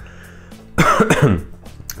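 A man coughs once, clearing his throat, about a second in.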